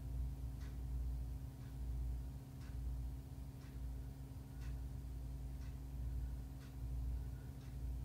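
Steady low hum with faint ticks about once a second, like a ticking clock.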